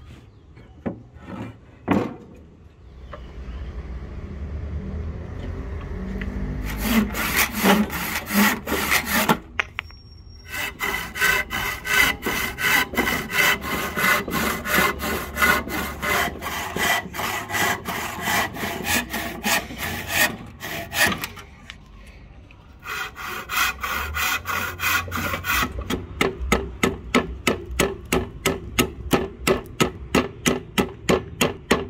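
Hand saw cutting a row of relief kerfs across a wooden axe-handle blank clamped in a bench vise, to rough out the handle's curve. It goes in quick back-and-forth strokes, pauses briefly about two-thirds of the way through, then resumes in faster, more even strokes. A few sharp clicks come near the start.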